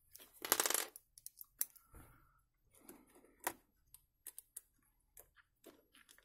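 Bit being swapped on a precision screwdriver: a short rattle about half a second in, then scattered small clicks of metal bits and the driver being handled.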